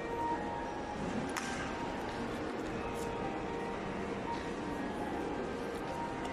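Steady ambience of a busy airport terminal hall: a constant wash of indistinct crowd noise and movement, with faint background music and a couple of light clicks.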